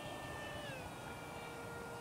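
Electric ducted fan of a small RC F-18 Hornet jet flying at a distance: a faint, steady high whine of several tones that drops a little in pitch a little under a second in.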